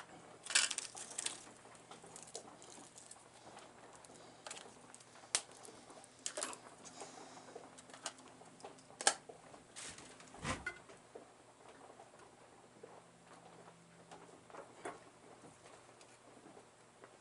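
Scattered light clicks and taps of a plastic cassette shell being handled and set in place on a drill press table, the sharpest click about nine seconds in and a dull thump about a second later. A faint low hum runs underneath.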